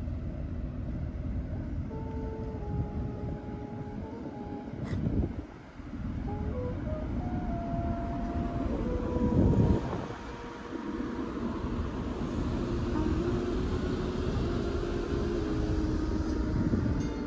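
Steady low rumbling noise, with a louder surge about nine to ten seconds in, under faint music of held notes that step from pitch to pitch.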